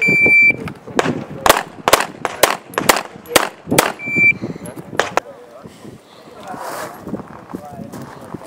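Electronic shot timer's start beep, then a fast string of CZ 75 pistol shots over about five seconds, with a second short beep about four seconds in.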